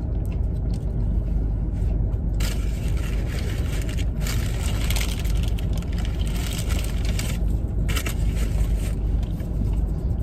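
Paper sandwich wrapper crinkling and rustling in the hands in three bursts, the longest from about two and a half to seven seconds in. Under it runs the steady low rumble of a car cabin.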